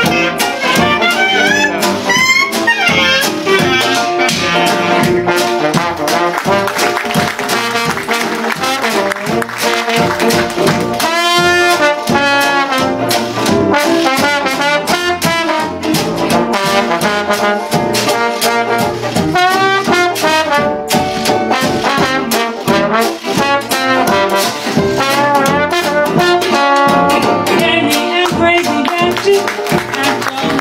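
Traditional New Orleans jazz band playing an instrumental chorus: clarinet and trombone over a tenor banjo strummed on the beat, with cornet.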